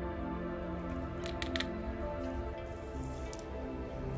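Soft background music with steady held notes, with a few brief faint clicks about a second and a half in.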